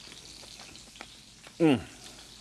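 Bluefish frying in a pan on the stove, a steady quiet sizzle, with a small click about a second in.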